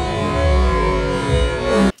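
Live concert recording of a band playing, with an electric guitar solo line over heavy bass; the music cuts off suddenly near the end.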